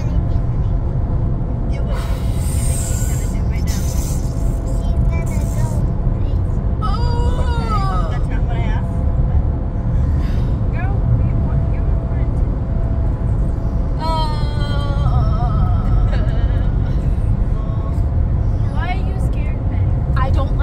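Steady road and engine rumble inside a moving car's cabin, with music playing over it. A voice-like sound gliding up and down comes in twice, about a third of the way through and again past the middle.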